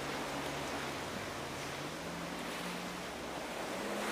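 Steady rush of wind and breaking sea around a small Mini-class racing yacht sailing fast through rough waves, with a faint low hum that rises slowly in pitch.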